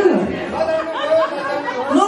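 Several voices chattering in a large hall.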